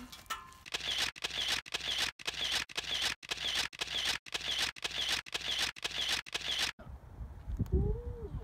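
A camera shutter firing over and over in quick succession, about two shots a second for some six seconds, then stopping abruptly. A low thump follows near the end.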